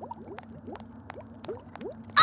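Cartoon bubbling sound effect: a quick string of short rising blips, about five a second, with faint clicks over a low steady hum.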